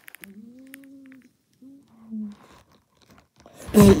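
A voice humming a low, steady note for about a second, then a shorter second hum. Near the end comes a loud, sudden rustle-and-bump of handling noise against fabric, with a brief vocal "mm".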